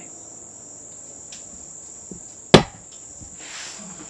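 Crickets trilling as a steady high background, broken about two and a half seconds in by a single sharp, loud smack, followed by a short hiss.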